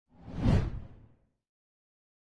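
Whoosh sound effect for an animated intro title card: a single swell that rises, peaks about half a second in, and fades away by about a second and a half, heaviest in the low end.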